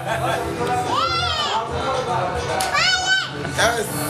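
High-pitched voices calling out in long shouts that rise and then fall in pitch, the two loudest about a second in and around three seconds, over a steady low hum.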